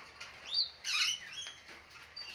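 Rainbow lorikeets in a cage giving two short, high chirps, about half a second and a second in.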